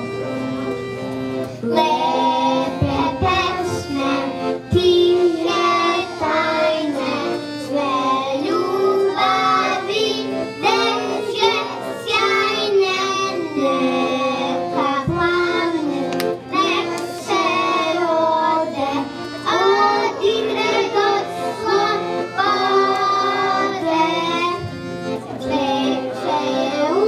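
Children singing a song together with instrumental accompaniment, one girl's voice carried by a microphone. The accompaniment plays alone briefly, and the voices come in about two seconds in.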